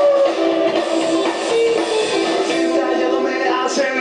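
Rockabilly band playing live: acoustic guitar strumming with upright bass and drums behind a lead vocal. Heard as it came through a television set, so the sound is thin.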